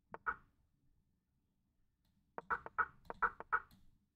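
Short, sharp clicks as online chess moves are played quickly with a computer mouse: two just after the start, then a quick run of about seven between two and a half and three and a half seconds in.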